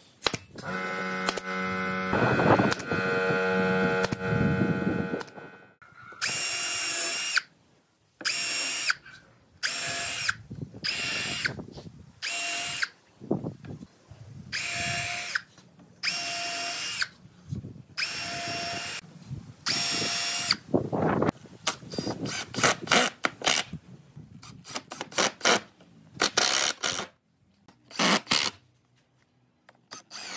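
Cordless power drill running in repeated bursts of about a second each, drilling into a pine frame, after a steadier run of about five seconds near the start. Near the end come quicker, choppier bursts as screws are driven in.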